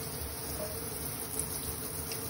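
Kitchen faucet's spray running steadily into a stainless steel sink, an even hiss of water.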